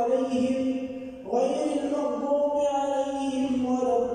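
An imam's chanted Quran recitation during congregational prayer: one man's voice in long held melodic phrases. The voice breaks off briefly a little over a second in, then carries on.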